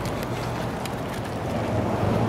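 Wind blowing across the microphone outdoors: a steady rush of noise with no distinct events.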